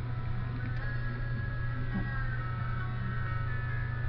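Background music: a melody of held high notes over a steady low hum.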